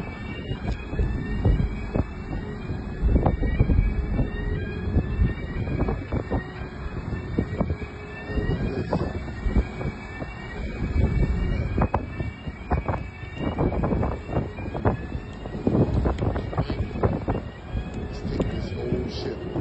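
Deep rumble with irregular crunches and bangs as a large roll-on/roll-off ship's hull grinds along a concrete quay, while a siren or alarm sounds over it in rising whoops, a little more than one a second, fading out about two-thirds of the way through.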